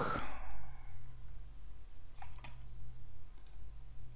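A few sharp computer mouse clicks on a desk, two of them close together a little past two seconds in, over a steady low hum.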